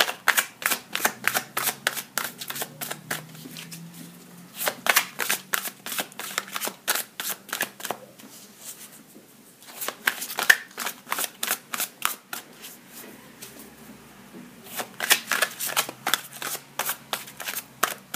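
A tarot deck being shuffled by hand: four runs of rapid card snaps, each a few seconds long, with short pauses between them.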